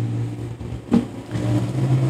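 A man humming a low, steady closed-mouth "hmm" filler between sentences, broken a little before one second in by a brief sharp sound, then held again.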